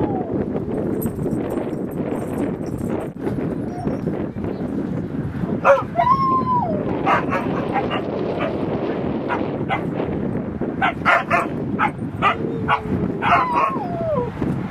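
Siberian huskies vocalizing in play: a drawn-out whine that rises and falls about six seconds in, then a rapid run of short sharp barks and yips through the second half, with another held whine near the end, over steady background noise.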